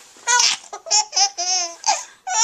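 A baby laughing in a string of about six short, high-pitched bursts of giggles, beginning about a quarter second in.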